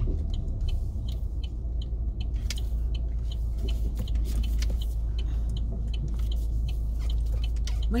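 Car cabin at low speed: steady low engine and road rumble with the turn-signal indicator ticking evenly, roughly three ticks a second, as the car turns in to park.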